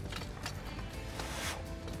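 Soft background music, with a brief hiss of breath about halfway through as the smouldering match cord of a matchlock musket is blown on to keep it glowing.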